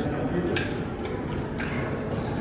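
Faint voices over steady gym background noise, with one sharp click about half a second in.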